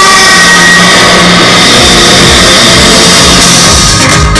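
Loud soundtrack of a projection-mapping show played over loudspeakers: a rushing, whooshing swell over a steady low drone and rumble, forming a transition between musical passages, with an electronic beat starting at the end.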